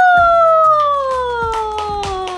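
A long, high 'wooo'-like cheer from a voice that leaps up and then slides slowly down in pitch, as a cake's candles have just been blown out, with scattered hand claps.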